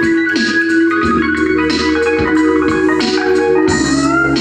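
A beat being played live on an arranger keyboard: a held organ-like chord over a bass line, with drum hits at a steady pace.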